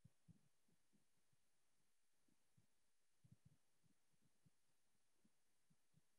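Near silence, broken by faint scattered low taps with a small cluster about three seconds in: keyboard keys and mouse clicks.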